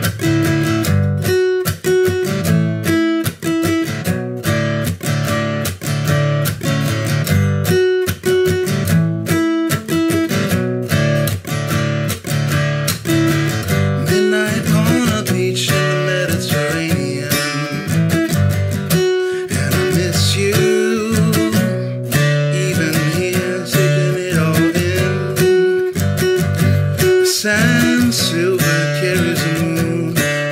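Solo steel-string acoustic guitar in drop D tuning, fingerpicked: a fast, steady run of plucked notes in a repeating pattern.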